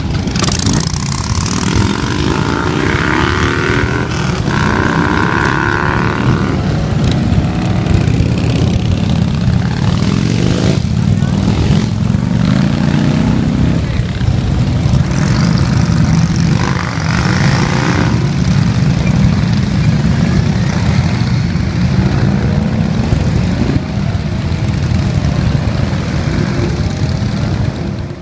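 A column of V-twin cruiser and touring motorcycles riding past one after another, engines rumbling continuously and revving up in rising sweeps as each bike pulls away.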